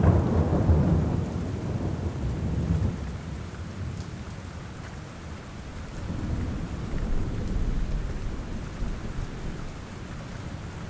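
Steady rain, with low rolling rumbles of thunder: one fading over the first few seconds and another swelling in past the middle.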